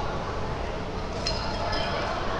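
Steady background noise of an indoor fight venue: a low, even hum and murmur from the hall, with no clear single event standing out.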